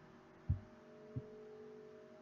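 Faint steady hum with two soft, low thumps, one about half a second in and one just after a second.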